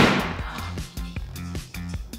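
The tail of a loud crash-like sound effect fading out at the start, then background music.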